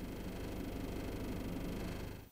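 Steady low outdoor ambient noise from a street, an even hum with no distinct events.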